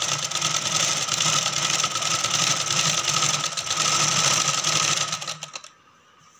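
Domestic sewing machine running at speed, stitching along the edge of a saree, with a steady whine and a fast even rattle of the needle. It stops abruptly about five and a half seconds in.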